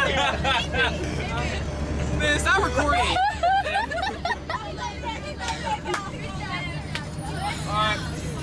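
Overlapping chatter of several voices inside a moving bus, over the bus's steady low engine and road rumble.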